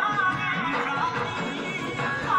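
Jaunsari folk song: voices singing a gliding, ornamented melody over music.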